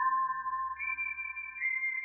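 Electronic title music: long, steady, high synthesizer notes held over one another, sonar-like, with a new higher note entering just under a second in.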